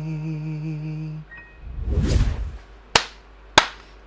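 A male singer's last held note ends about a second in, followed by a short rush of noise, then two sharp hand claps less than a second apart near the end.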